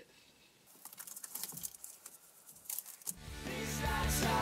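Faint, scattered rustling and crackling of old fibrous loft insulation being rolled up by hand. About three seconds in, music fades in and grows louder.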